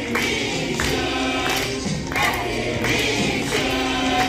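A group of children singing together over a backing music track with a steady beat.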